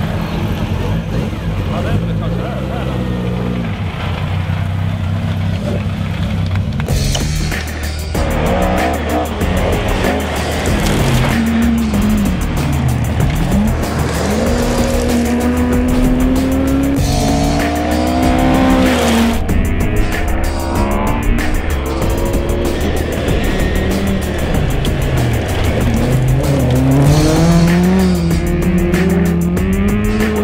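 Ford Escort Mk2 rally car at full throttle on a gravel stage. From about eight seconds in, the engine note climbs and drops again and again through the gears over the rush of tyres on loose gravel. Music runs underneath throughout.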